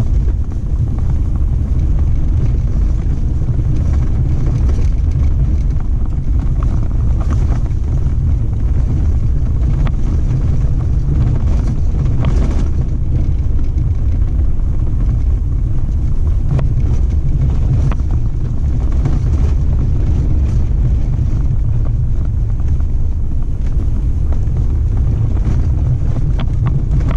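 Off-road vehicle driving along a sandy dirt wash: a steady low rumble of engine and tyres on dirt, with wind noise on the microphone, and a few faint rattles and ticks.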